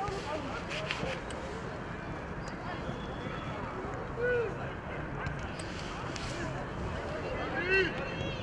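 Ambience of a football match played outdoors: a steady background noise with scattered distant shouts from players and touchline, one about four seconds in and another near the end.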